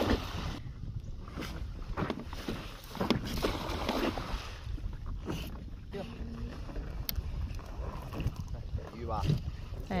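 A nylon cast net being hauled hand over hand out of the water onto a boat's bow, with irregular splashing and water streaming off the wet mesh, over a low wind rumble on the microphone.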